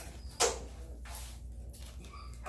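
A single sharp knock about half a second in, over a steady low hum.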